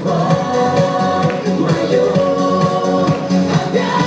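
Music: a pop song with sung vocals and held notes over a backing track with a steady beat.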